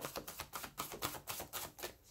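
Tarot cards being shuffled by hand, the cards slapping together in a steady run of soft clicks, about six a second.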